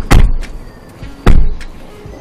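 Car doors being shut: two heavy thuds, the first just after the start and the second just over a second in.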